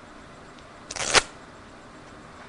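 A deck of playing cards riffled once under the thumb: a quick burst of card edges about a second in, lasting about a third of a second.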